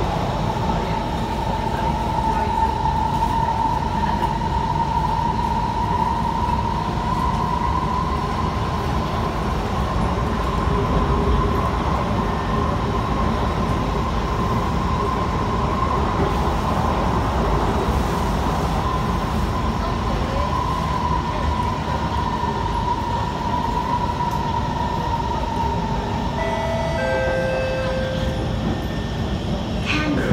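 Kawasaki C151 metro train running, heard from inside the car: a steady low rumble with a whine that rises slightly, holds, then eases down and fades out a few seconds before the end. A few short separate tones follow near the end.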